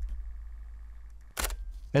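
Canon EOS R6 mirrorless camera starting up after being switched on: a faint high buzz for about a second, then a sharp click about a second and a half in.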